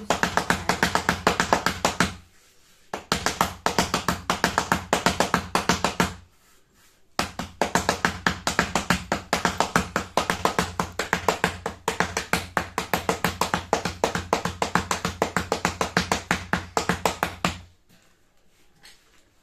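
Rotti dough being patted flat by hand on a board: quick, rhythmic palm slaps, several a second, in three runs with short breaks about two and six seconds in.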